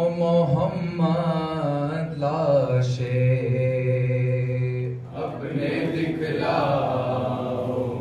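Men singing a noha, an unaccompanied Urdu mourning lament: a lead male voice stretches out a long, wavering line, and from about five seconds in more men's voices join in together.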